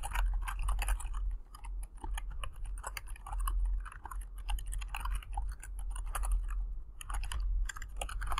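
Typing on a computer keyboard: a quick, steady run of key clicks with a few brief pauses.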